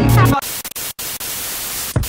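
Music cuts off about half a second in and gives way to a steady static hiss of white noise, broken by a few brief drop-outs, as a sound effect in a music track's intro.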